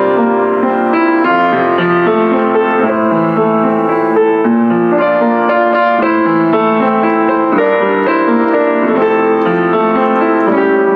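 A Kawai CE-7N upright acoustic piano, built around 1982, being played with a continuous flow of notes and chords at an even level.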